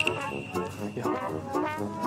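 Comic background music played on brass, in short bouncing notes, with a high ringing chime at the start that fades away.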